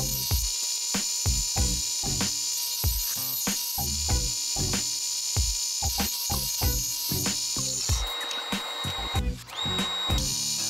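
Background music with a steady beat, over a table saw ripping a wooden board. The saw's running noise and a steady high whine come through most plainly near the end.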